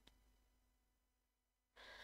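Near silence: faint room tone, with a soft intake of breath near the end.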